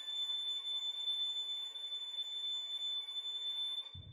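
Sampled solo violin from VSL Synchron-ized Solo Strings holding one very high, pure harmonic (flageolet) note, the top note of an ascending harmonics arpeggio. It is held steadily and stops just before the end.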